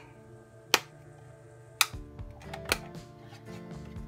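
Plastic rocker switch on a 12 V LED RV dome light clicking twice, about a second apart, with a few lighter ticks after, switching the lamps on. Faint music runs underneath.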